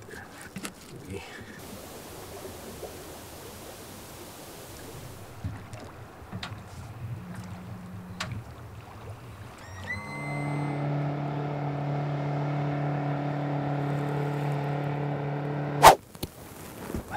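A few light clicks and soft hiss, then about ten seconds in a jet boat's outboard motor starts up and runs at a steady pitch. A sharp crack comes just before the end.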